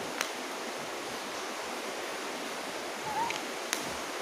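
Steady background hiss of room noise, with a faint click near the start and another near the end.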